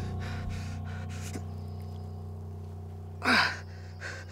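Low, sustained drone of held tones from a film score, with a short, loud breathy rush sliding down in pitch about three seconds in.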